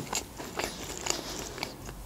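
A person chewing a soft dessert close to the microphone: small, irregular mouth clicks and smacks.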